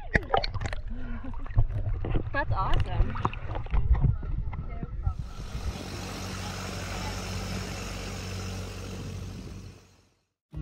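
Water sloshing and splashing around a camera held at the waterline, with a woman's voice over it. About halfway through this gives way to the steady hum of a boat engine under way with rushing water and wind, which fades out near the end.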